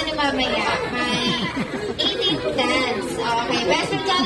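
Several people talking at once: steady, overlapping chatter of a crowd in a room.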